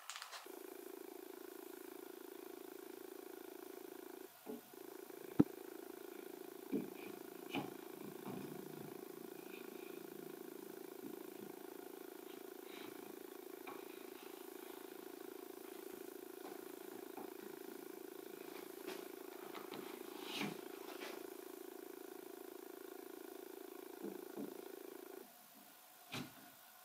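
Light clicks and knocks of wooden joint pieces being handled and fitted together by hand, the sharpest about five seconds in. Under them runs a steady low hum that cuts off just before the end.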